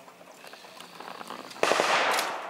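A single sudden loud bang from the mock battle's blank fire or pyrotechnics, about a second and a half in, fading over the following half second.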